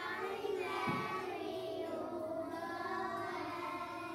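Young children singing together, holding the notes of a song phrase.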